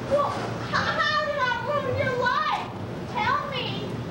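A performer's high-pitched voice with a wavering pitch, drawn out in one long phrase and then a shorter one, without clear words.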